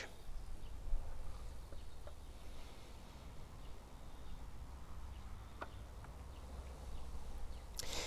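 Quiet outdoor ambience with a steady low rumble, and a few faint ticks of plastic print tongs moving a print in a plastic developing tray, the clearest a little past halfway.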